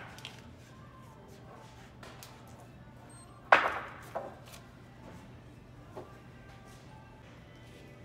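Wooden boards knocking together as lumber is handled on a store rack: one sharp knock about three and a half seconds in, followed by a few lighter knocks, over a steady low hum.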